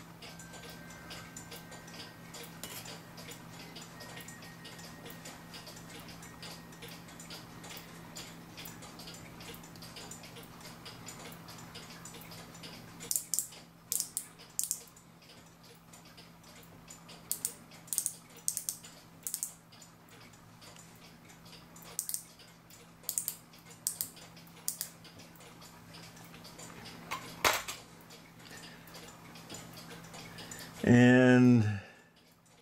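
Small brass gears and parts of a Regula cuckoo clock movement clicking and clinking against each other and the brass plates as the movement is taken apart by hand. Sharp clicks come scattered through the second half, over a low steady hum.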